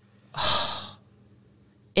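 A single audible breath close to the microphone, about half a second long, a little way in, between stretches of talk.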